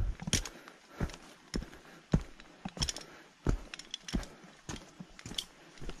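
Footsteps of a hiker walking down a dirt-and-rock trail littered with dry leaves and twigs: irregular crunching and scuffing steps, two or three a second.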